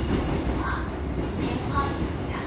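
Seoul Metro Line 3 subway train running, heard from inside the passenger car as a steady low rumble of wheels on rail and running gear.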